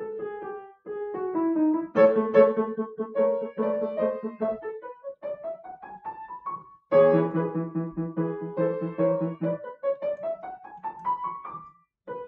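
Grand piano played solo: a loud chord about two seconds in and again about seven seconds in, each held and followed by a quick rising run of notes.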